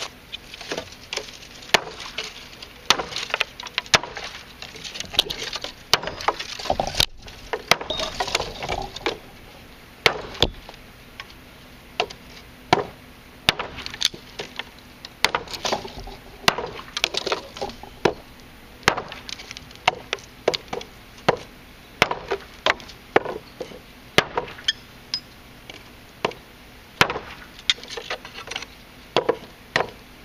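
A large chopping knife strikes small-diameter dry hardwood branches on a wooden block in a run of sharp chops, roughly one a second with short pauses.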